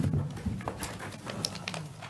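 Scattered clicks, knocks and rustling as people get up and move about a meeting room, with faint, indistinct voices in the background.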